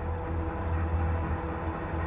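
A steady low drone with a few faint held tones above it, even in level throughout.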